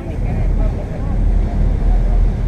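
Bateaux Mouches tour boat under way on the river: a steady low rumble and rush of engine, water and wind on the open deck. Faint voices come through in the background.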